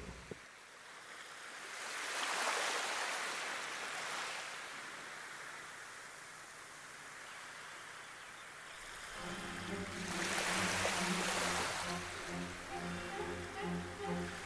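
Surf washing onto a shore in two slow swells, about two and ten seconds in. From about nine seconds in, slow bowed-string music with sustained low notes comes in beneath the waves.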